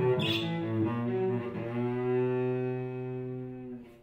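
Solo cello played with the bow: a few short notes, then a long low note held for about two seconds that fades away, with a brief break near the end.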